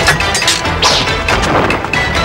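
Martial-arts fight sound effects: a quick run of punch and strike hits with swishes of moving limbs, over dramatic fight music.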